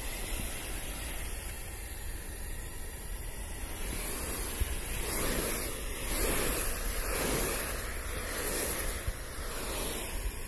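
Low-pressure softwash spray of cleaning solution striking a corrugated metal roof: a steady hissing wash that swells louder a few times in the second half.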